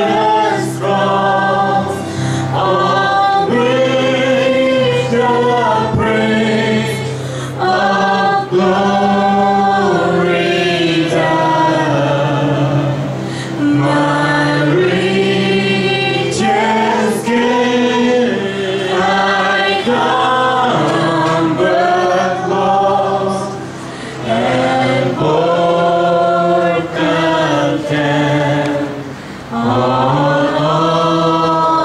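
Church worship band playing a praise song: female and male voices singing together over sustained electronic keyboard chords, with guitar and an acoustic drum kit, cymbal strikes now and then.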